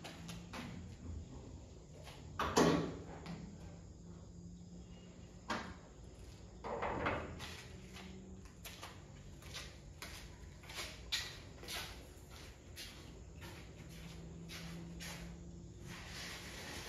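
Car bonnet being released and lifted by hand: a series of metallic clicks and knocks, the loudest about two and a half seconds in, with further clunks near five and a half and seven seconds as the hood goes up and is propped open.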